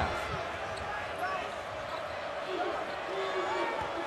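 Basketball arena ambience during live play: a steady crowd murmur with the ball being dribbled on the hardwood court.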